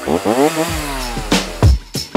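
Chainsaw sound effect revving up, its pitch climbing and then falling away as it winds down. A laugh comes in about a second in, and music with a thumping beat starts about a second and a half in.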